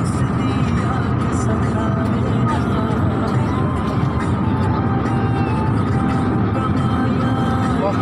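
Steady engine and road rumble of a moving bus, with music and a singing voice playing over it.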